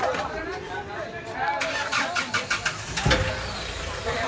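A car engine being started: the starter cranks in a rapid run of strokes, then a low thump about three seconds in as the engine catches and settles into a low steady running, with voices over it at the start.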